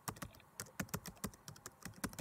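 A quick, uneven run of keyboard typing clicks, about five or six a second. It is a sound effect laid under text typing itself onto the screen.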